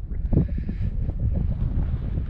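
Wind buffeting a handheld GoPro's microphone: an uneven low rumble that swells and dips in gusts, with a fainter hiss above it.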